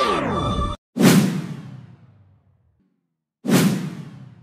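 Electronic intro music winding down in a falling-pitch slide that cuts off suddenly under a second in, followed by two whoosh-and-hit transition sound effects, one about a second in and one near the end, each fading out over about a second.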